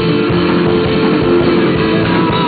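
Rock band playing live: electric bass, drum kit and electric guitar in a loud, steady full-band passage.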